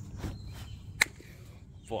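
A folded baby stroller being shoved into a carpeted car trunk: a few soft knocks, then one sharp click about a second in as the stroller's frame strikes something.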